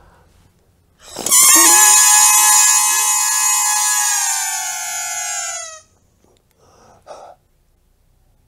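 Gold foil inflatable crown being blown up by mouth through a thin tube, giving a loud, high, reedy squeal that slowly falls in pitch over about four and a half seconds as the spikes fill. A short soft rustle and a brief click follow near the end.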